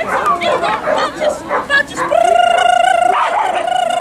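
Kelpie barking and yipping with excitement during an agility run. About two seconds in, a long, wavering high-pitched call begins and holds to the end, with one short break.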